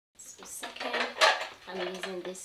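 Gold-rimmed glass charger plates clinking and clattering as they are handled, loudest about a second in. A woman's voice is heard briefly near the end.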